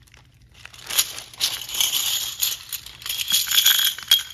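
A clear plastic bag crinkling as it is handled and opened, starting about a second in. Plastic game chips spill and clatter out of it.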